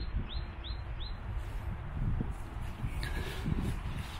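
A small bird calling a quick run of short, high, hooked notes, about three a second, that stops about a second in, over a steady low rumble.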